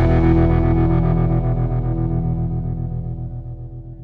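Closing chord of a country-rock song on distorted electric guitar, ringing out with a fast, even pulsing effect and fading away.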